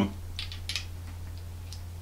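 A few faint small clicks of a metal 5 ml colour cup being fitted onto a Harder & Steenbeck Evolution ALplus airbrush, over a steady low hum.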